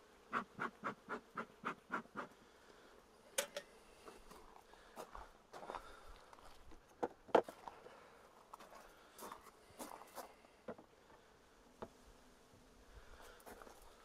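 Honeybees buzzing around an open hive. In the first two seconds a bee smoker gives a quick run of about eight short puffs, and later there are a few scattered knocks as wooden hive parts are handled.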